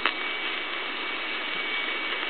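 Steady hiss of an off-air AM radio recording between words, with a thin, steady high whistle running through it.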